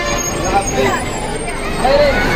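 Engine of a double-decker coach bus running as it drives slowly past close by, with people's voices over it.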